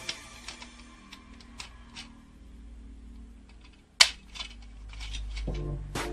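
Small plastic clicks and taps from a toy robot dragon being handled and its parts moved, with one sharp snap about four seconds in.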